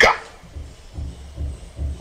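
A spoken word trails off, then a pause in a caller's speech filled only with uneven low rumbling bumps of background noise.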